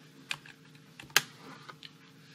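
Computer keyboard keys pressed a few times, about five short clicks, the loudest a little over a second in, as the lecture slides are stepped back and forth.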